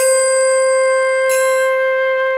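Synthesized flute playback from a notation app holding one long steady note, the tonic Sa of Raag Yaman, sounded at C5.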